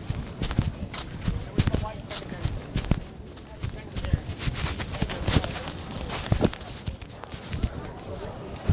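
Handling noise from a phone microphone that is covered or being carried: irregular knocks and rubbing several times a second, with muffled, indistinct voices underneath.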